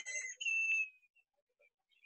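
The tail of a woman's voice, then a faint, steady, high whistle-like tone lasting about half a second, followed by about a second of silence.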